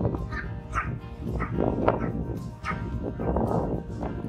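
A dog barking in a series of short barks over background music.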